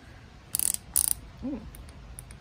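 The flip-out LED work light built into a DeWalt tool backpack being swivelled on its detented hinge: two short ratcheting rasps, about half a second and one second in.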